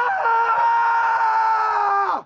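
A young man's single long, high-pitched scream, held steadily, with a small drop in pitch about a quarter second in.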